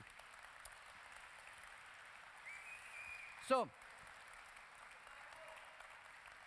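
Faint applause from a conference audience, steady and even, after a joke from the stage.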